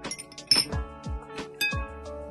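A metal teaspoon clinking against a glass tea glass as the tea is stirred: a sharp, bright clink about half a second in and a lighter ringing clink near the end. Background music with a steady beat plays throughout.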